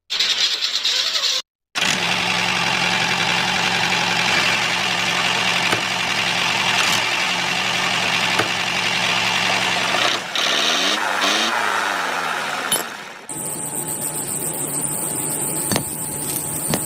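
A motor running steadily with a low hum. It cuts out briefly about a second and a half in, and its pitch dips and rises again around ten to twelve seconds in.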